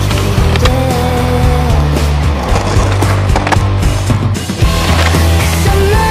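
Skateboard rolling on concrete, with several sharp clacks of the board hitting the ground in the first few seconds. Rock music plays loudly under it.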